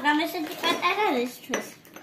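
A woman talking while a plastic food packet crinkles in her hands, with a sharp click about one and a half seconds in.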